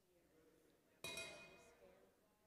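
A single sharp clink of a hard object about halfway through, ringing briefly with a bright tone as it fades.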